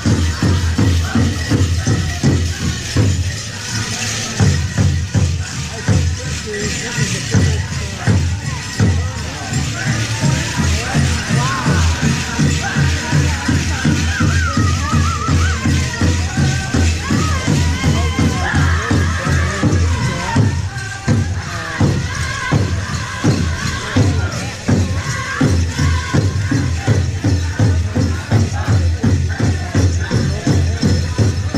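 Pow wow drum group singing a Grand Entry song, voices rising and falling over a steady, even beat on the big drum, with the jingle of dancers' regalia mixed in.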